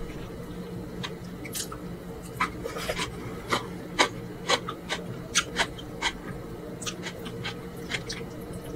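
Close-miked wet mouth sounds of eating soft food by hand: chewing with irregular sharp smacks and clicks of the lips and fingers, more frequent from about two seconds in, over a steady low hum.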